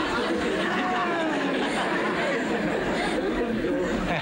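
Several voices talking over one another in a steady stream of chatter.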